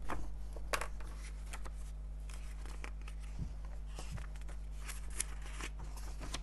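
Printed paper datasheet pages being leafed through by hand: a run of short crisp page-flipping and rustling sounds, over a steady low hum.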